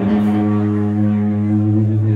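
Live doom metal playing: distorted electric guitar and bass guitar holding one heavy chord that rings out steadily, struck just before and sustained without a change.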